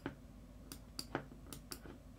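Faint, scattered clicks of a computer mouse, about six in two seconds, as the editing sliders are adjusted.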